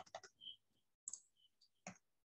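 Faint computer keyboard typing: a handful of scattered keystroke clicks as a command is entered.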